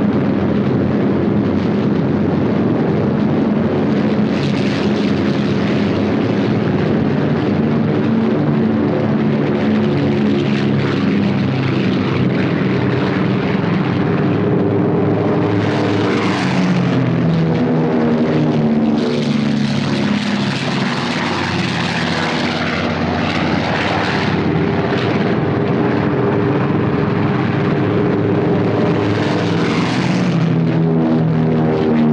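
Propeller-driven B-17 Flying Fortress bombers, their radial piston engines droning steadily through the whole stretch. About halfway through, a bomber passes close and low: the sound swells and its pitch falls as it goes by. Another swell comes near the end.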